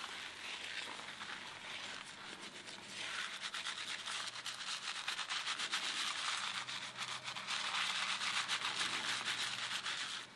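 Fingers scrubbing a shampoo-lathered scalp, a dense wet rubbing of many quick strokes that grows louder about three seconds in.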